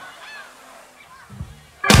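Live blues band in a stop-time break: a second or so of low stage sound with a couple of soft low thuds, then near the end the band comes in together on one loud chord with a cymbal crash that rings on.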